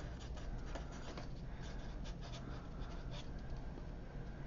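Sharpie felt-tip marker writing on paper: a quick run of many short strokes as a couple of words are written out.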